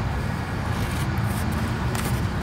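Steady low rumble of nearby road traffic, with no distinct single vehicle or impact standing out.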